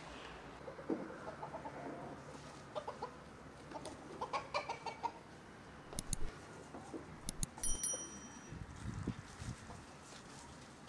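Domestic hens clucking in short runs of calls. A few sharp clicks, with a brief high ringing tone, come about two-thirds of the way through.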